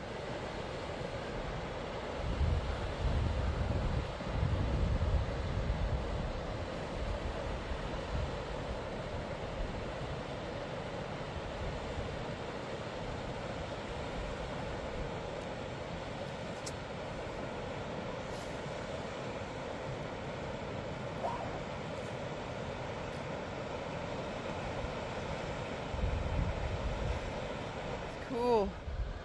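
Steady rush of a mountain creek flowing over rocks in the canyon below. Wind buffets the microphone in gusts about two seconds in and again near the end.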